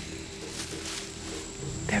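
A wild elephant calling over background music, with a woman starting to speak at the very end.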